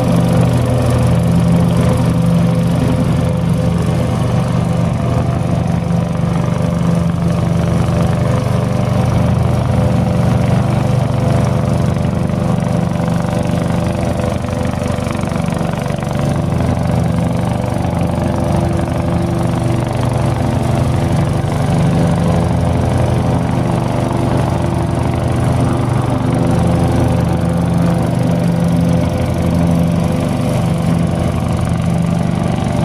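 John Deere Hydro 165 riding lawn mower running steadily as it drives and mows across grass, its engine note even throughout.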